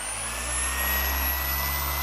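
Electric car polisher running on the paint with its softest pad, its motor whine rising as the speed is turned up and levelling off about half a second in, then running steadily: the final polishing pass at higher speed.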